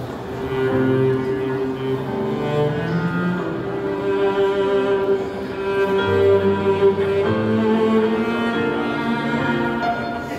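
Cello bowing a slow melody of long held notes, with other notes sounding beneath it, in a piano trio performance.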